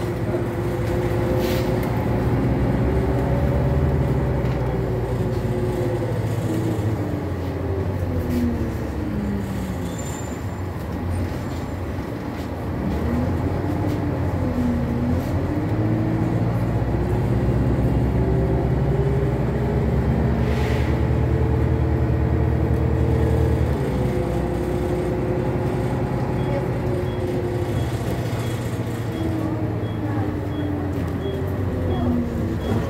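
Renault Citybus 12M city bus heard from inside the passenger cabin, its diesel engine and drivetrain running. The pitch of the whine falls as the bus slows, reaches its lowest about halfway through, then climbs as it pulls away and falls again near the end.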